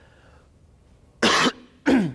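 A person coughing twice, a short harsh cough about a second in and a second, briefer one just before the end.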